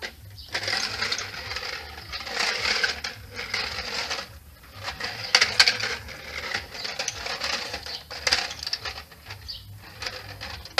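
Plastic pull-along toy dragged by its string across patio tiles, its wheels and inner mechanism rattling and clicking, with a couple of brief pauses as the pulling stops and starts.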